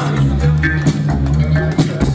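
Live rock band playing: electric guitars, bass and drums over a steady low bass line, with a voice singing.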